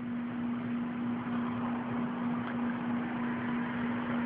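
Steady background hum and hiss with a single constant low tone, unbroken by any other event.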